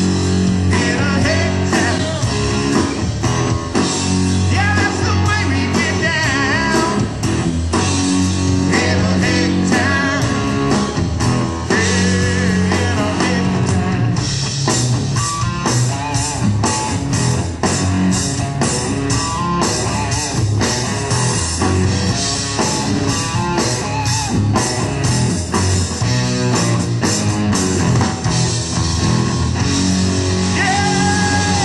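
Rock music with electric guitar, drums keeping a steady beat, and a singing voice.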